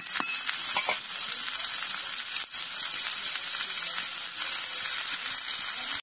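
Cubed vegetables and sliced onion frying in oil in a metal wok over a wood fire: a steady sizzle, with a few scrapes and clicks of a metal spatula stirring in the first second.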